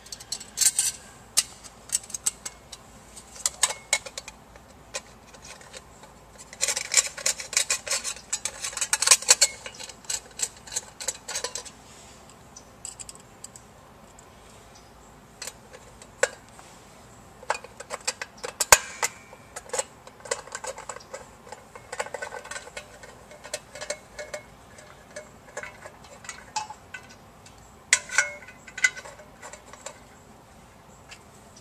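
Stainless sheet-metal coupling guards being fitted onto a Grundfos CR pump and screwed in place: irregular metallic clicks, taps and light scrapes. Thicker clusters come about a third of the way in and again near the end, and one sharper click falls just past the middle.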